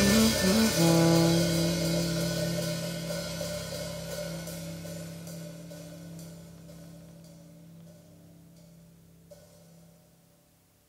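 Jazz quartet of saxophone, piano, double bass and drums ending a tune: a last held chord with cymbal wash, fading away steadily over about nine seconds.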